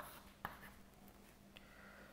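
Near silence with faint chalk writing on a chalkboard: two light chalk taps in the first half second, over a faint steady hum.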